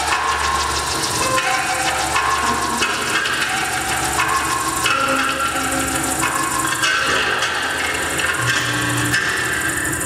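Live kinetic sound-art machines running: a dense, unbroken clatter of small tapping and rattling mechanisms, overlaid with pitched tones that jump to a new pitch about every half second.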